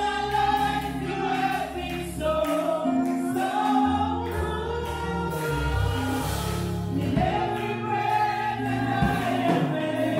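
Women's voices singing a gospel song together through microphones, holding long notes over a backing of sustained low instrumental chords.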